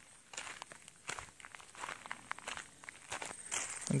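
Footsteps of a person walking across mown grass, soft and irregular.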